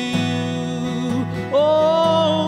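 Live worship song: a man singing to his strummed acoustic guitar, a new sung line starting about one and a half seconds in.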